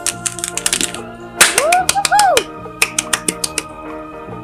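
Sharp clicks and crinkles of paper cutouts being handled and smoothed flat, over steady background music. About a second and a half in, a short pitched sound swoops up and down twice.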